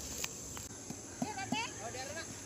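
Voices of people calling out across an open field, with a few sharp knocks in between.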